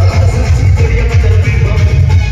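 Odia procession band's music played very loud through a large sound system, with heavy bass and a melody line over it.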